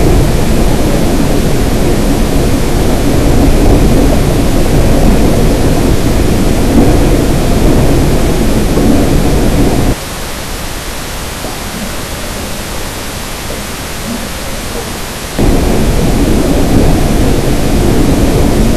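A dense, loud wall of noise from a noise-music track, heaviest in the low end. About ten seconds in it cuts off suddenly to a thinner, quieter hiss, and about five seconds later it comes back just as suddenly.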